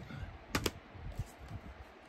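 A few light plastic clicks and taps from Blu-ray cases being handled and swapped, two sharp clicks close together about half a second in, then fainter ticks.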